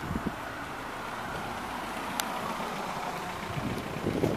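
Steady tyre hiss of a car going by on the wet street, with one sharp click about two seconds in.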